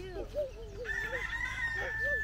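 A rooster crowing once: one long drawn-out call that starts about a second in, slightly falling in pitch toward its end.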